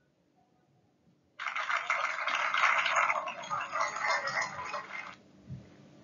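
Applause sound effect: a crowd clapping, starting a little over a second in and cutting off suddenly after about four seconds.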